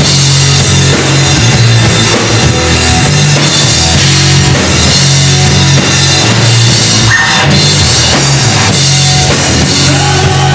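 Live hard rock band playing loud, with the drum kit prominent alongside electric guitar and bass, in a stretch without singing.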